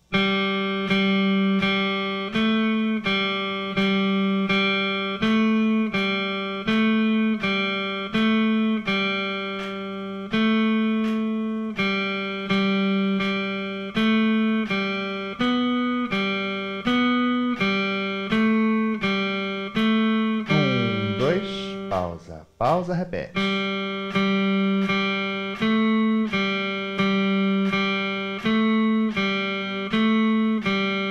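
Electric guitar played clean, one note at a time on the third string (G, A and B), in slow even quarter and half notes as a sight-reading exercise, with a light click marking each beat. About two-thirds of the way through there is a brief sliding sweep in pitch before the steady notes resume.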